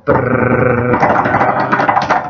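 A drumroll made with the voice: one long, loud rolled "drrrr" growl, buzzing rapidly.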